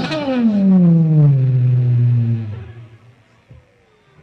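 A man's voice holding one long, loud cry that falls slowly in pitch and fades out about three seconds in.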